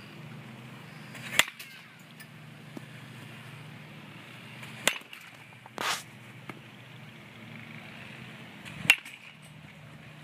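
A baseball bat hitting balls: three sharp cracks about three and a half seconds apart, with a short noisy rush shortly after the second. A steady low hum runs underneath.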